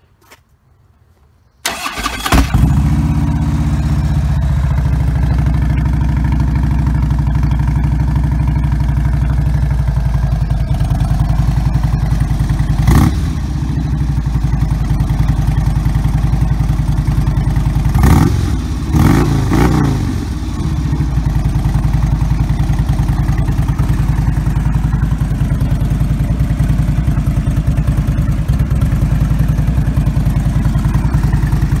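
Fuel-injected 2009 Harley-Davidson Road King's V-twin, breathing through Vance & Hines exhaust pipes, starts up about two seconds in and settles into a steady idle. It is revved briefly once near the middle and twice more a few seconds later, dropping back to idle each time.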